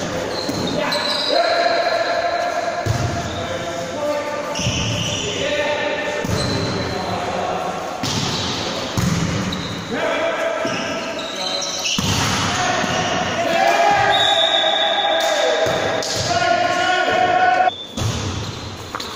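Volleyball rally in a sports hall: the ball being struck and hitting the court, with players shouting calls to one another, all echoing in the hall.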